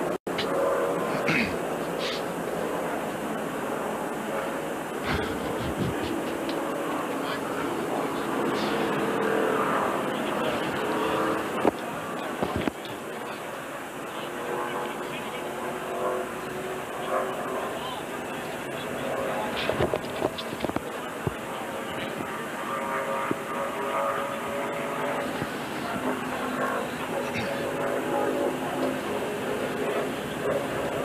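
NASCAR Winston Cup stock car engines running at reduced speed behind the pace car under caution, a steady drone with track ambience. A few sharp clicks stand out, the loudest about twelve seconds in.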